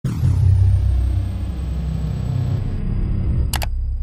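Intro sound effect: a deep rumble that starts suddenly and holds steady, with a thin high tone sliding down at the start and a brief hiss about three and a half seconds in.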